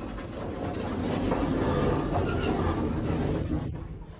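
Old Otis elevator car riding up from the basement: a steady low rumble and rattle of the moving car, building over the first couple of seconds and easing off near the end.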